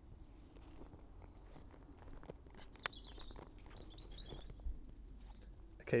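Quiet footsteps through grass and fallen leaves, with a few soft clicks, while a bird sings a short run of high, falling chirps in the middle.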